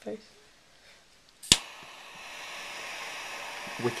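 A jet-flame lighter is clicked alight once, about a second and a half in, with a sharp click. Its gas flame then hisses steadily, growing slightly louder.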